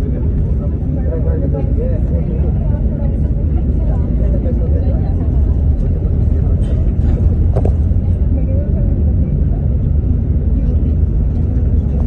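Steady low rumble of a moving road vehicle, heard from inside its cabin as it drives along, with indistinct voices talking in the background.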